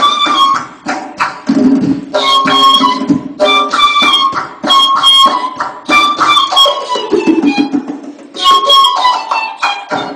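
Persian ney (end-blown reed flute) playing a melody in the Chahargah mode over a tombak (goblet drum) struck with quick finger strokes. About seven seconds in, the ney's line slides down in pitch and the drumming thins briefly before picking up again.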